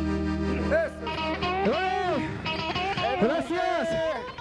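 A norteño band of accordion, tuba and electric guitar holds its final chord, which cuts off about a second in, followed by several voices whooping and shouting.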